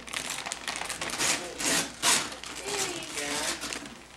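Tissue paper and gift-wrap paper rustling and tearing as a present is unwrapped, in several short bursts, with a brief voice about three seconds in.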